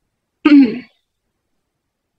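A single short vocal sound from a person, about half a second in and under half a second long, falling in pitch. It sounds like a brief throat clearing or a clipped syllable.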